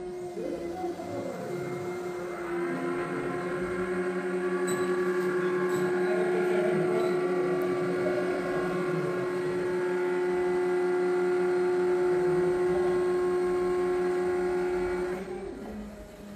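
Electric forklift's hydraulic system running a roll clamp to turn a paper roll: a steady whine at an unchanging pitch. It builds over the first few seconds, holds level, and stops just before the end.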